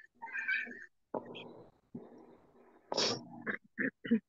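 Vocal sounds of a domestic animal in a few separate short bursts, the loudest about three seconds in, picked up through a video-call microphone.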